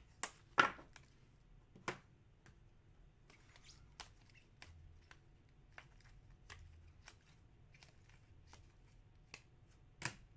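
Hard plastic trading-card holders clacking and tapping against each other and the tabletop as they are sorted into stacks by hand. The loudest clacks come about half a second in and near two seconds, with lighter taps scattered through the rest.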